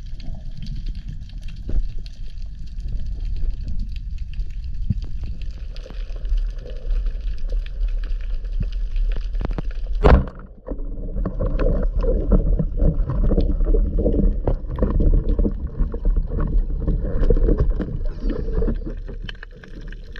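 Underwater camera audio: a muffled, steady wash of water noise, then a single sharp crack about halfway through as a speargun fires. After the shot the underwater noise grows louder and busier, with many short clicks and knocks.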